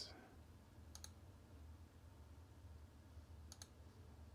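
Near silence with two faint computer mouse clicks, one about a second in and one near the end, each a quick double click-clack, over a low steady room hum.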